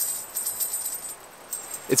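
Bear bells strung on a paracord perimeter line jingling as the line is shaken by hand: a bright tinkling for about a second that then dies away.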